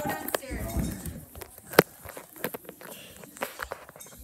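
Scattered knocks and taps with footsteps, from a handheld phone being carried and jostled, and a faint voice in the first second. The strongest knock comes a little under two seconds in.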